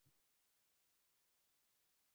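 Near silence: the call audio is gated to dead silence, apart from the brief tail of a short sound at the very start.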